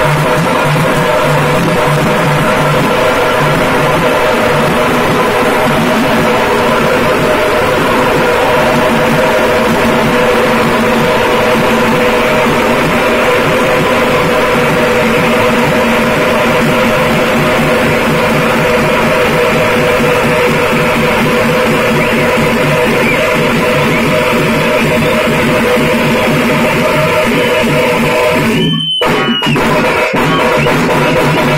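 Several tamate frame drums played together with sticks in a loud, continuous ensemble rhythm, their heads ringing. The sound drops out briefly about a second before the end.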